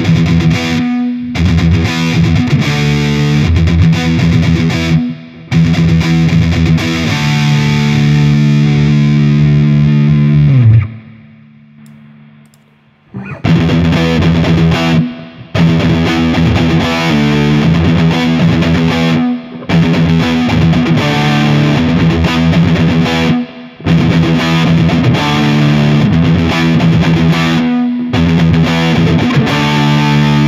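Heavily distorted electric guitar riff on a Gibson Les Paul, played through the 'Metal Lead 5' high-gain amp model of AmpliTube 4. The first pass ends in a downward slide and a short pause about eleven seconds in. The riff is then played again through the same amp model in AmpliTube 5.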